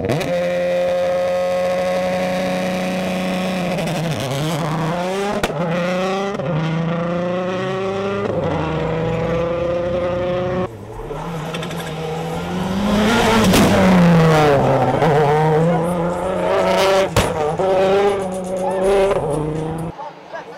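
Suzuki SX4 WRC rally car's turbocharged four-cylinder engine accelerating hard through the gears, its pitch climbing and falling back at each upshift, with a couple of sharp cracks. After a cut about eleven seconds in, the engine is heard again at full throttle, rising and falling as the car comes on.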